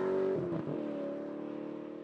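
A car engine note holding steady, dropping in pitch about half a second in, then fading out.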